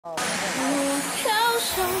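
Opening of a pop song: a singer's voice holding and bending notes over light backing, with the bass coming in near the end.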